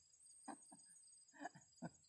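Near silence: a faint steady high tone with a few soft, brief sounds, about half a second in and twice more near the end.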